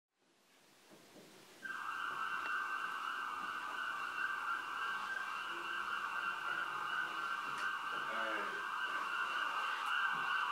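A steady, narrow-band electronic hiss like filtered radio static cuts in suddenly after about a second and a half of near silence and holds evenly, with faint low wavering tones under it about eight seconds in.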